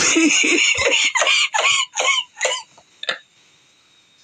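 A man laughing in a quick run of about seven bursts that stops about three seconds in.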